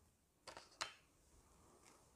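Near silence with two brief soft clicks about a third of a second apart, then a faint rustle: small handling noises from wooden fruit skewers.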